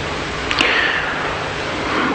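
Steady hiss and faint low hum of an old video recording during a pause in a man's speech, with a brief swish about half a second in.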